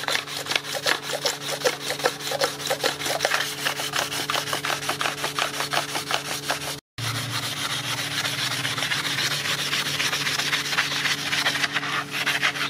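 Sandpaper on a sanding block being rubbed back and forth across the flat gasket face of an aluminium cylinder head: a rapid, even rasping at several strokes a second. It is the deck being sanded clean of old gasket residue before a new head gasket goes on. There is a brief break about seven seconds in, after which the rasp runs on more continuously.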